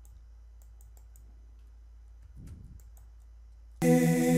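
Sparse computer mouse clicks over a low steady hum. Near the end a sung vocal track suddenly starts playing back loudly from the Cubase mixing session.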